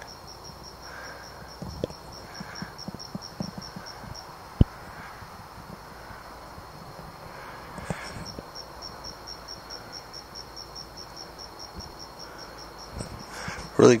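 Crickets chirping in a fast, even pulse, about six chirps a second, which drops out for a few seconds in the middle and then resumes. There are a few soft knocks, the sharpest about four and a half seconds in.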